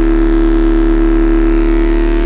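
Electronic dance music: a single loud, buzzy synthesizer note held dead steady over a deep sub-bass, with no beat or vocal, in a break of a tech house mix.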